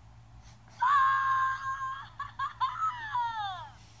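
Gidget interactive plush toy's voice box playing a vocal sound effect through its small speaker: a long, high held cry, then a few short notes and several cries falling in pitch.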